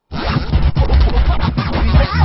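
Hip-hop track with turntable scratching over a heavy beat, coming in after a split-second gap.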